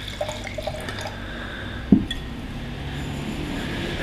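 Red wine pouring from a bottle into a wine glass, with a single knock about two seconds in.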